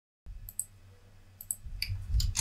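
A few short, sharp clicks from working a computer's mouse and keys, several coming in quick pairs, over a faint low hum.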